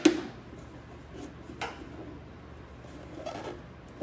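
Plastic bulb sockets being twisted and worked loose from the back of a Ford F-150 tail light housing: a sharp click at the very start and another about a second and a half in, with faint rubbing and handling between.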